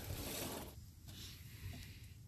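Faint rustling handling noise, strongest in the first moment and then fading to a low background.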